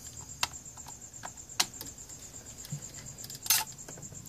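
A few light, scattered clicks and taps from a screw and circuit board being worked by hand inside a vintage Yamaha CR-2020 receiver's chassis, as the board's mounting screw is loosened. The loudest is a quick cluster of clicks near the end.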